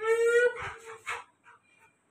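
A dog howling: one call that rises and then holds steady for about half a second, followed by a few short broken sounds.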